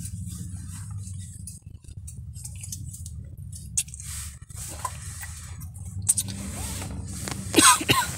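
Steady low hum of a car's interior, with faint scattered clicks and rustles as soda is drunk from a plastic bottle. A brief vocal sound comes shortly before the end.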